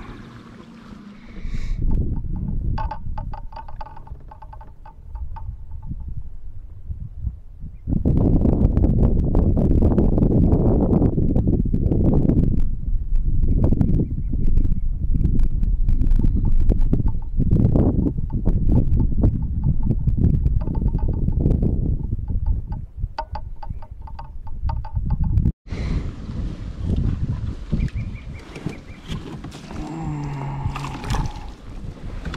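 Wind buffeting the microphone: a loud, uneven low rumble that swells about eight seconds in and keeps on, with a brief dropout near the end.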